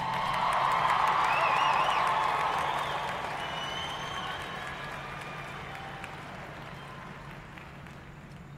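Audience applause with some cheering from a sparse arena crowd. It swells about a second in, then dies away.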